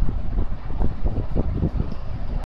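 Low, uneven rumble of wind or handling noise on the microphone.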